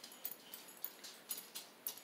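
Faint, irregular squeaks and scratches of a felt-tip marker being drawn in short strokes across the plastic face of a CD.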